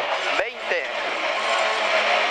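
Rally car engine running at speed, heard from inside the cockpit as a steady, loud mechanical noise, with one short spoken pace-note call just under half a second in.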